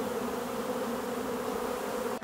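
Steady hum of many honeybees flying around their hives.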